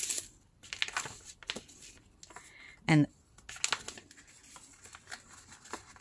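Newspaper being folded and creased by hand on a table: on-and-off rustling and crinkling of the paper, in short sharp crackles.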